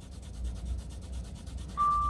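A wooden number two graphite pencil, held on its side, shading on drawing paper. It makes a fast, even scratching of overlapping back-and-forth strokes, easing from hard to medium pressure.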